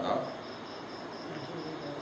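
An insect chirping steadily in the background, a high, even pulse about five times a second, over faint room hiss.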